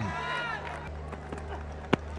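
Background voices and stadium hum, then near the end a single sharp knock as the cricket ball strikes the batter playing the delivery.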